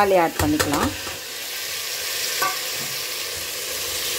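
Chopped tomatoes hitting hot oil and onions in a stainless steel pressure cooker and sizzling steadily as a spoon stirs them in. One light knock about two and a half seconds in.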